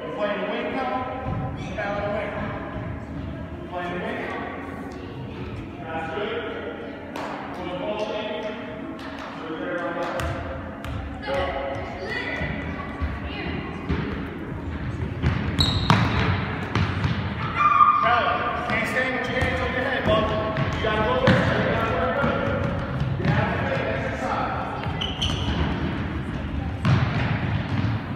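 A soccer ball being kicked and bouncing, with many short sharp thuds at irregular intervals, over overlapping indistinct voices of players and onlookers, in a large indoor hall.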